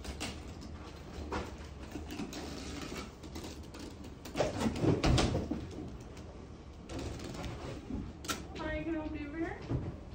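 Indistinct background voices of people talking, loudest about halfway through, with a few sharp clicks.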